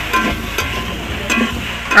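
Metal spatula stirring vegetables frying in a steel karahi: sizzling, scraping and a few short metallic clinks against the pan.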